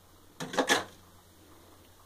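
A brief clatter of a few quick knocks close together, about half a second in, from a freezer being defrosted: thawing ice breaking loose inside it.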